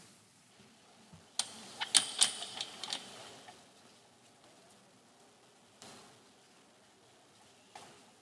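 A quick run of sharp clicks and rattles about one and a half to three and a half seconds in, loudest around two seconds. Two faint single clicks follow later, over a quiet background.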